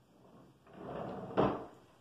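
A drawer being pulled open with a sliding rub that ends in a single knock about halfway through.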